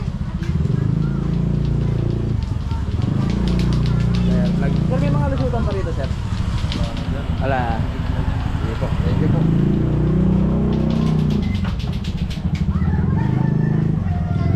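Busy alley ambience: people's voices in the background, with a motorcycle engine running close by.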